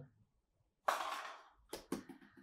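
A short breathy rush of air about a second in, fading over half a second, then two sharp clicks near the end.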